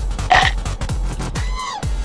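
Upbeat background music with a steady kick-drum beat. A short vocal noise comes about a third of a second in, and a brief falling hum near the end.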